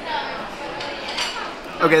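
Restaurant dining-room background: dishes and cutlery clinking, with faint voices.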